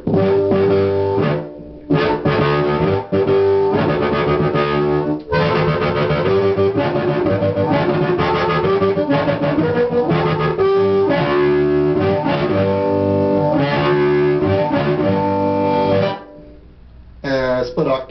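Blues harmonica played into a cupped hand-held microphone and amplified through a homemade 25 W solid-state harp amp (LM1875 chip amp with a 'Professor Tweed' distortion preamp): loud phrases of held notes and chords with short breaks between them. The playing stops about 16 seconds in, then picks up again with a brief phrase near the end.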